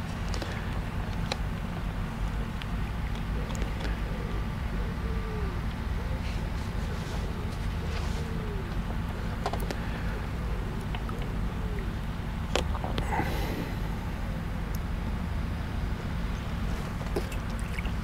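Steady low outdoor rumble, with a few faint clicks and taps scattered through it.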